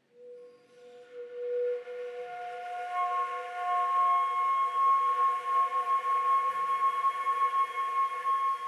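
Concert flute playing long held tones that begin softly and swell, with higher pitches joining the first low note until several steady pitches sound together in a chord-like blend, ringing in a reverberant church.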